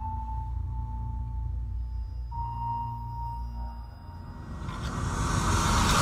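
Movie trailer soundtrack: a deep steady drone under a thin held high tone that steps up in pitch about two seconds in and fades out, then a swelling whoosh that builds toward the end.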